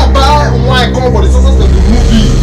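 Voices talking, with no clear words, over a loud steady low hum.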